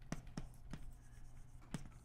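Chalk writing on a blackboard, faint: four short sharp taps and strokes of the chalk spread across the two seconds.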